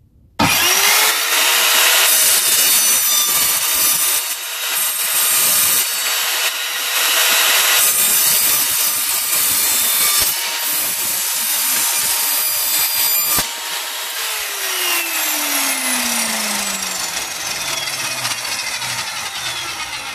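Evolution R210SMS sliding mitre saw starting with a quick rise in motor pitch and cutting through a thin-walled metal frame section with its tungsten-carbide-tipped multi-material blade, a loud harsh scream for about thirteen seconds. The trigger is then released and the motor winds down, its pitch falling steadily over the last several seconds.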